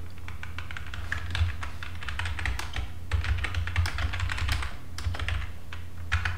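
Computer keyboard being typed on in quick runs of keystrokes, thicker from about a second in, over a steady low hum.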